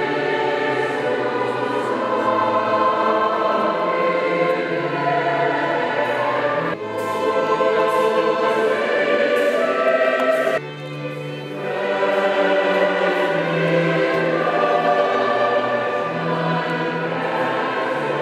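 A choir singing sacred music in sustained, slow-moving phrases, with a reverberant church sound. The singing breaks off sharply twice, about seven and ten and a half seconds in, then carries on.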